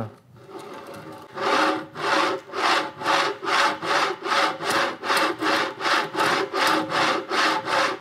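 GV3 V guide carriage pushed quickly back and forth by hand along a sand-covered metal track, its V-groove bearing wheels grinding through the grit. The strokes come evenly, about three a second, starting a little over a second in.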